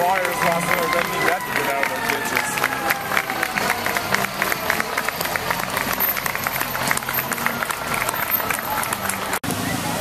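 A street crowd claps and calls out as parade vehicles pass. A long, high held tone rises slightly and then slowly falls underneath the clapping.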